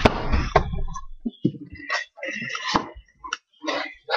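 A deck of playing cards being riffle-shuffled by hand: handling noise at the start, then a few short rustling bursts of riffling from about two seconds in.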